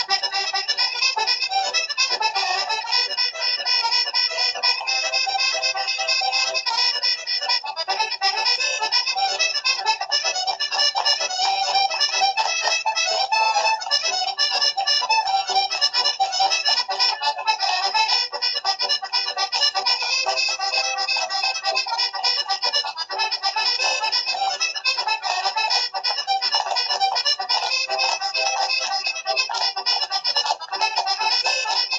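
Accordion playing a fast Irish reel, heard through a television speaker.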